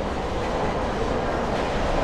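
Steel roller coaster train (SheiKra, a dive coaster) running along its track with a steady rumble.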